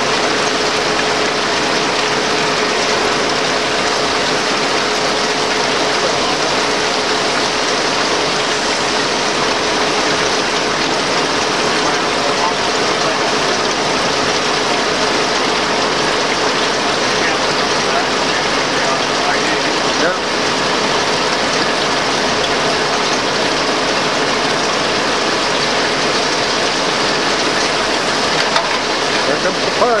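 Six-spindle Cone automatic lathe running under cut, cutting oil gushing and splashing over the tools and work, a steady loud machine noise with a constant hum.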